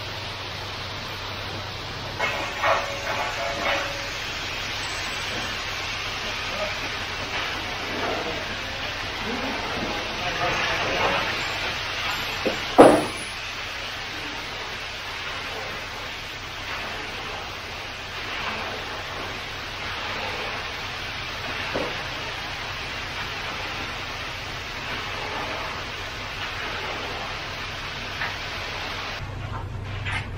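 Wet concrete pouring off a truck chute and being raked and spread across a slab: a steady gritty rushing, with one sharp knock about halfway through.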